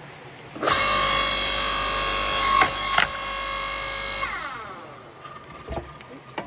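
Electric log splitter starts up, its motor and hydraulic pump running with a steady whine while the ram drives a log against the wedge. The wood gives with two sharp cracks about half a second apart, then the motor winds down with a falling whine. A couple of light knocks near the end come from the split halves being handled.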